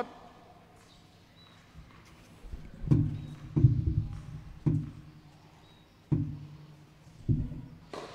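A tennis ball bounced on a hard court about five or six times, roughly a second apart, each a dull thud with a short ring.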